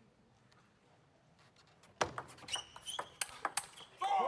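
Table tennis rally: a plastic ball clicking sharply off bats and table in quick, irregular succession from about halfway through, with a brief squeak among the hits. Before that, a hushed hall with only faint ticks.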